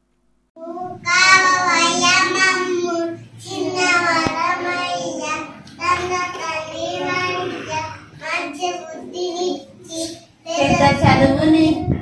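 Young children singing a song, in long sung phrases with short breaks between them.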